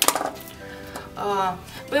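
One sharp click at the start as scissors and a cut kitchen sponge are handled on a cutting mat, with background music playing.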